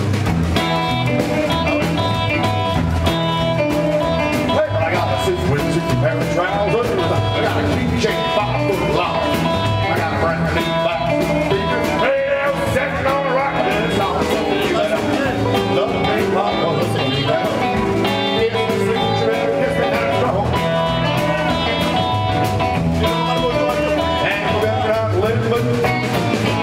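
A live rock and roll band playing: strummed acoustic guitar and electric guitar over upright bass, in a steady, continuous groove.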